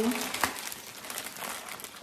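Plastic poly mailer bag crinkling as it is pulled open by hand, with one sharp crackle about half a second in.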